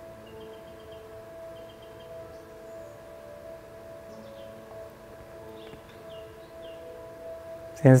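Soft background drone music: several long, overlapping held tones that swell and fade.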